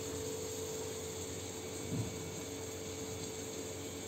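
A steady machine hum with one held tone over a faint even hiss, and a soft bump about two seconds in.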